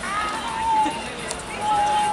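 Speech: a high voice drawing out its words in long held tones, twice, over background chatter from surrounding tables.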